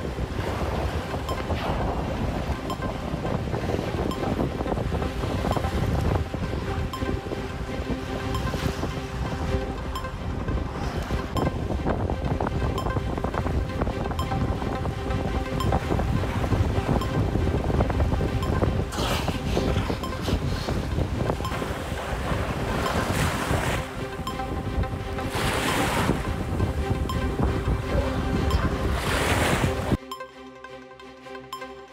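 Surf washing onto a beach, with wind buffeting the microphone and several louder surges in the second half. A quiet steady music bed runs underneath.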